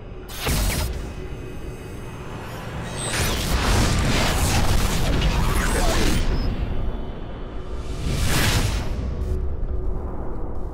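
Channel logo intro sting: music layered with sound effects, a sweeping whoosh about half a second in, a louder dense run of effects in the middle, and another whoosh later on.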